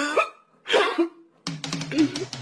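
A man sobbing in two short, hiccuping cries during the first second. About one and a half seconds in, guitar music starts.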